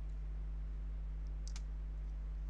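A computer mouse clicking faintly a couple of times about one and a half seconds in, over a steady low electrical hum.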